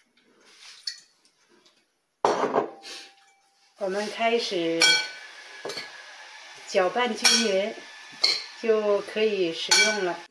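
Metal utensils clinking and scraping against a glass mixing bowl as shredded potato salad is tossed. The scraping makes repeated pitched squeaks, after a quieter start.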